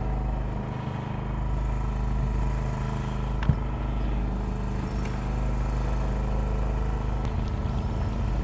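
A small engine running steadily on the boat, a constant even hum, with one short sharp click about three and a half seconds in.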